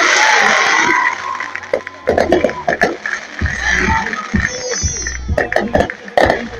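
Fireworks going off: a dense crackle of bursting stars in the first second, then a series of booms and sharp pops, with music playing underneath.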